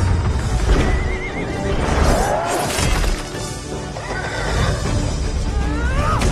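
Film score over battle sound effects, with a horse whinnying several times: wavering, rising and falling calls over a deep rumble.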